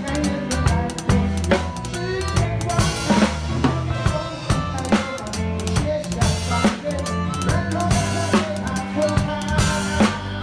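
Drum kit played at a steady groove, with bass drum, snare and cymbal strokes over the backing song's bass and other pitched instruments.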